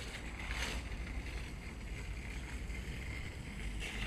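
Steady low rumble of wind on a handheld phone microphone, with a faint background hiss and a brief louder swish about half a second in.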